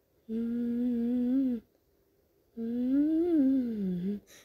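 A cartoon character's voice humming two long "mmm" hums. The first is held at a steady pitch; the second rises and then falls.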